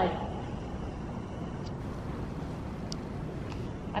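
Steady low rumble of wind blowing against a metal-sided indoor riding arena, with a few faint ticks.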